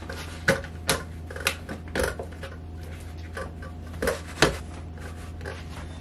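A few sharp taps and knocks as a fabric-shaded wall sconce is pressed and settled onto adhesive wall hooks, pushed firmly so the hooks stick.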